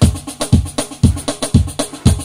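Yamaha PSR-SX900 arranger keyboard's rhythm style starting up: a drum beat with a kick drum about twice a second and quick ticks up top between the hits.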